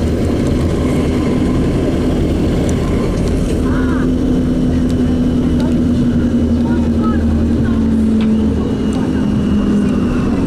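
Bus engine and road noise heard from inside the passenger cabin while the bus is moving: a steady drone with an engine hum that grows stronger a few seconds in.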